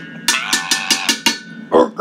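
A metal bowl struck in a quick run of about seven taps, each ringing on the same few metallic tones.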